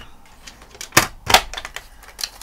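Drawing tools being handled and put down on a desk: two sharp clicks about a second in, a third of a second apart, over quiet room tone.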